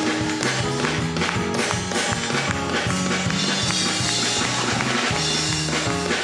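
Live church band playing an upbeat praise tune, with a drum kit keeping a steady beat under a moving bass line.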